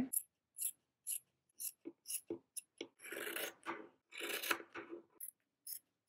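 Scissors cutting plush fabric: a scatter of light snips and clicks, with two longer rasping cuts about three and four and a half seconds in.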